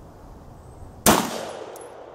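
A single gunshot about a second in: one sharp report, with its echo dying away over the following second.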